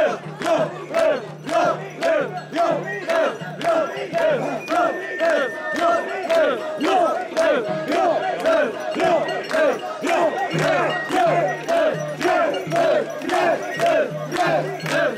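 A crowd of mikoshi bearers chanting in unison as they carry a portable shrine. The shouts come in an even rhythm about twice a second, each call rising and then falling in pitch.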